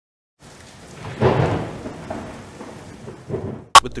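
A sound-effect transition: a noisy swell that rises about a second in and slowly fades, then one sharp, loud crack just before the narration comes back.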